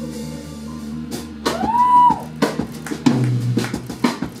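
Live blues-rock band playing without vocals: an electric guitar chord rings and fades, and drum hits come in from about a second in. Around the middle a single high note glides up, holds briefly and drops back down.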